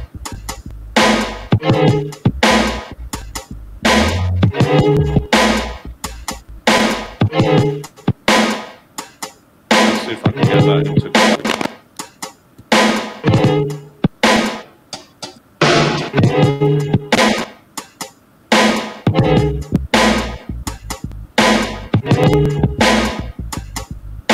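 A sample-based beat playing, with kick, snare and a deep bass under a looping sample. The bass and kick drop out for a second or two a few times, around a third of the way in, near the middle and again after it.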